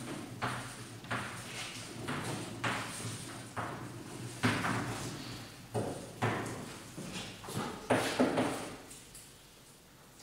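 Chalk writing on a blackboard: a string of sharp taps and short scratchy strokes, about one a second, each with a short echo, stopping near the end.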